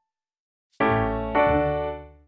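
Two keyboard chords struck about half a second apart, the first about a second in, each with a low bass note under it, fading out toward the end after a moment of silence.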